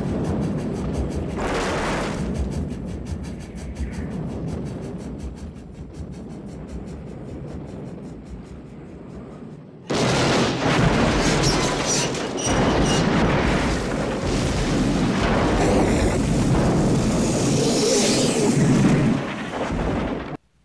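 Film soundtrack of a steam locomotive exploding on a trestle and crashing into a ravine, with music underneath. A blast right at the start dies away over several seconds. About halfway through comes a sudden, louder explosion, and the noise stays loud until the end.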